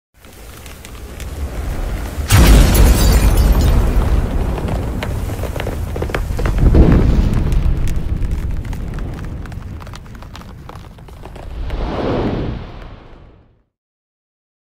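Cinematic intro sound effects: a rising swell that breaks into a heavy boom about two seconds in, a second surge around seven seconds, and a last swell near the end that fades out, with crackling throughout.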